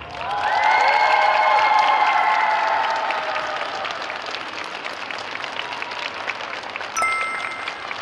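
Arena audience applauding a finished skating program, loudest in the first three seconds with held cheering voices over the clapping, then settling into steady clapping. About seven seconds in, a short electronic chime sounds.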